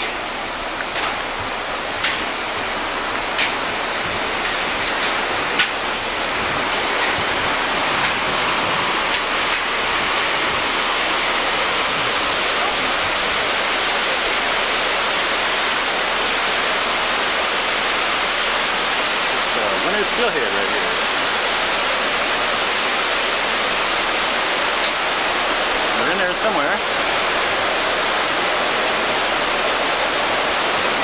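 Steady rush of water running through fish hatchery raceways. It grows louder over the first several seconds, then holds steady. A few light knocks come in the first ten seconds.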